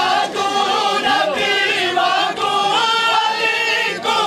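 Men's voices chanting a noha, the Shia mourning lament, together as a chorus, holding and bending long sung notes.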